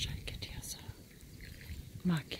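A person's soft, breathy whispering, with brief hissy sounds and a low rumble beneath.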